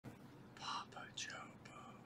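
Faint logo intro sound effect: a few short swooshes with gliding pitches, some falling and some rising, the strongest just under a second in.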